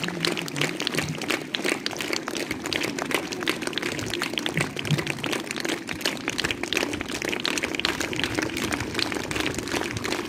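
Audience applauding, many hands clapping steadily at once, over a steady low hum.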